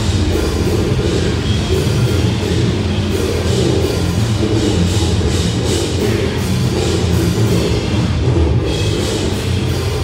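Death metal band playing live: drum kit and guitars in a loud, dense, continuous wall of sound, with rapid drum and cymbal strikes throughout.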